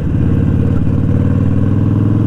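Harley-Davidson Sportster XL1200 air-cooled V-twin with Vance & Hines pipes, running at a steady cruising pace with an even, unchanging exhaust note.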